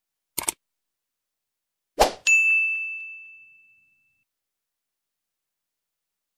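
Subscribe-button animation sound effects: a short click about half a second in, then another click about two seconds in, followed at once by a notification-bell ding that rings out and fades over about a second and a half.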